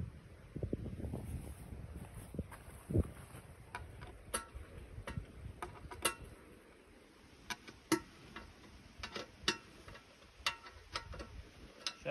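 Wind buffeting the microphone for the first few seconds, then scattered sharp clicks and taps, about one every second or two, from hand work at a log.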